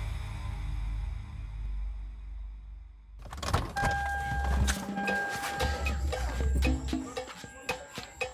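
A low, dark music drone that cuts off suddenly about three seconds in. Then a car door is opened, with clicks and knocks, a steady high beep-like tone, and music with heavy bass.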